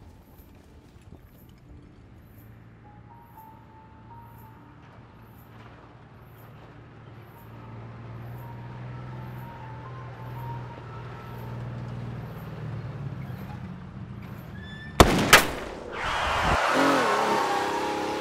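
An army truck's engine approaching and growing louder, under tense sustained music. About fifteen seconds in, two sudden loud bangs come close together, followed by a loud noisy rush with a wavering tone.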